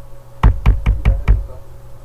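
A quick run of about six sharp knocks in under a second, starting about half a second in.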